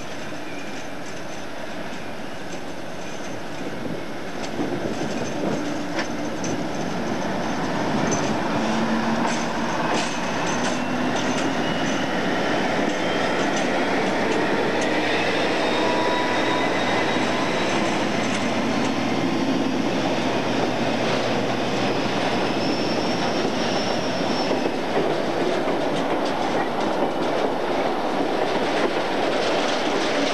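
British Rail Class 56 diesel locomotive, with its Ruston V16 engine, hauling a freight train: it draws nearer and grows louder over the first several seconds, then passes close by. Its wagons follow with wheels clattering over the rail joints and thin high wheel squeals on the curve.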